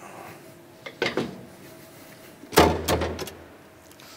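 A hinged safety guard on a W+D 410 envelope converting machine being closed: a light knock about a second in, then a louder thud with a few clicks about two and a half seconds in as the cover shuts.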